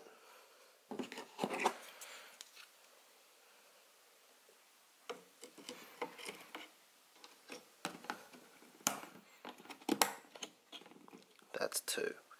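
Clicks and knocks of a Corsair Vengeance RGB Pro memory stick being pressed into a motherboard's DIMM slot and its retention clips closing. The clicks come in a short cluster about a second in, then more often from about five seconds on.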